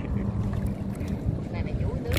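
Steady low rumble of wind on the microphone and water moving around a small wooden boat on open river water, with a faint steady hum underneath.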